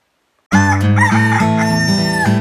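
Silence for about half a second, then a rooster crowing over acoustic guitar music.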